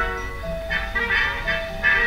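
Upbeat, fast-paced jazz film score, with a short phrase repeating about once a second.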